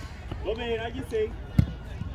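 A football kicked once, a single sharp thud about one and a half seconds in, with shouting voices from the pitch just before it.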